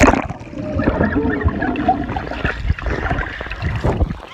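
A phone's microphone held underwater in a swimming pool: muffled bubbling and gurgling with dull knocks, starting sharply as it plunges under and cutting off as it comes back up at the end.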